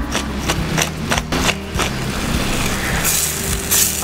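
Pepper mill grinding pepper over a pan of mushroom cream sauce, a quick run of clicks in the first two seconds, then the sauce sizzling as it is stirred, the hiss brightening near the end. A steady low hum runs underneath.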